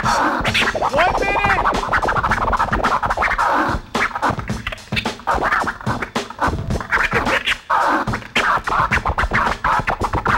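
Turntable scratching: a vinyl record pushed back and forth by hand on a turntable while the sound is chopped into rapid cuts on the mixer, with short rising and falling sweeps about a second in.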